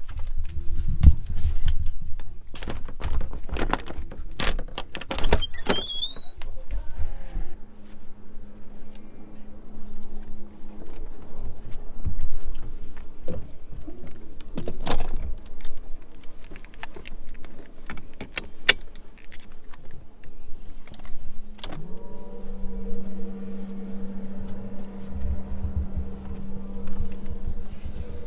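Knocks and clicks for the first several seconds, then a watercraft engine running with a steady low hum. A higher steady tone joins it about 22 seconds in.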